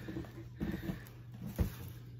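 Quiet handling of the items in a packed subscription box: faint rustles and soft knocks, with one dull thump about a second and a half in, over a steady low hum.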